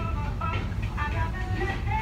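Steady low vehicle rumble with faint music playing over it.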